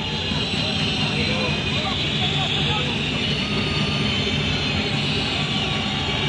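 Football stadium crowd noise: a steady din of many fans' voices while a free kick is set up.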